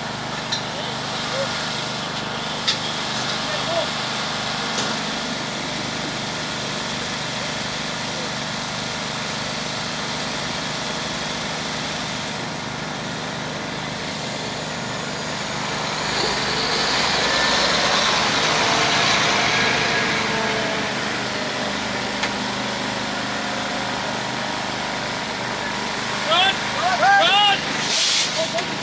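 Fire engine's water pump and engine running steadily. About halfway through, a louder rushing swell lasts several seconds.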